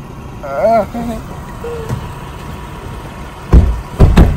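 A person's short exclamation about half a second in, over the low, steady running of an idling SUV engine. A loud low thump comes near the end.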